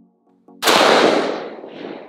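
A single shot from a CMMG Mk57 Banshee 5.7x28mm AR-15 pistol, sudden and loud about half a second in, followed by a rolling echo that dies away over about a second and a half.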